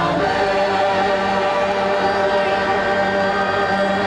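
A choir singing together, holding long steady notes.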